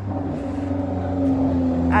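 A road vehicle's engine with a steady droning hum, growing louder as it approaches.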